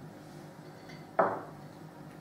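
A small porcelain bowl set down on a wooden table: a single knock about a second in, among faint handling of a plate and bread.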